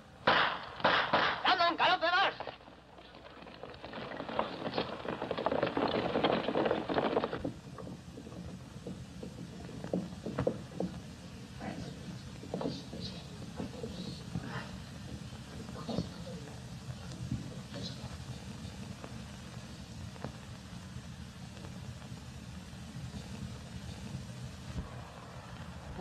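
A brief burst of voices, then a few seconds of louder rushing noise, followed by sparse, faint gunshot pops over the steady hiss of an old film soundtrack during a skirmish.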